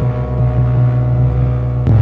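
Background music: a deep, sustained synth drone with held tones, a new chord coming in just before the end.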